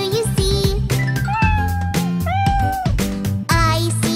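Two drawn-out cat meows, the first about a second in and the second just after it, over a children's song with a steady beat.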